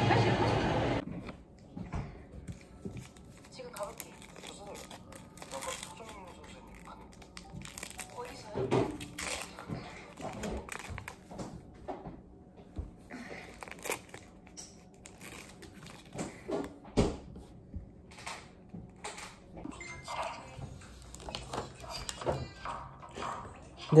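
Background music that cuts off about a second in, then quiet close-up handling noise: paper and plastic packaging crinkling and rustling, with scattered small clicks and taps.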